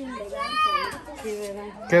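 A child's high-pitched voice, one call rising and falling about half a second in, followed by a steady, held low voice.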